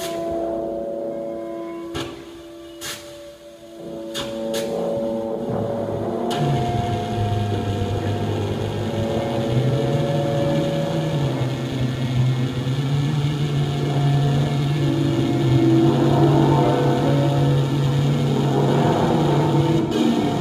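Free-improvised ensemble music: a few held tones with scattered clicks and knocks, then from about six seconds in a fuller, louder texture over a low sustained drone.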